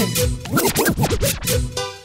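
DJ scratching on a controller's jog wheel: a quick run of pitch swoops up and down over the mix, ending in a steady held chord near the end.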